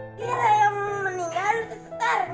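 A cat meowing: one long drawn-out meow that dips and then rises in pitch, with another beginning near the end, over background music.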